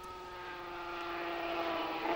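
250cc two-stroke racing motorcycle held at high revs, its steady engine note growing gradually louder as it approaches.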